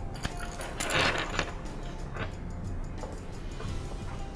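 Handling noises from assembling a metal grow light reflector: a rustling scrape about a second in and a few light clicks of small metal hardware as a hanger bracket and thumb screw are fitted, over faint background music.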